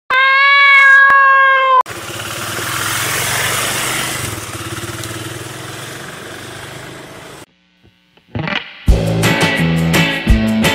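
A single long cat meow, then a motorcycle engine that swells and slowly fades before cutting off. Guitar music starts near the end.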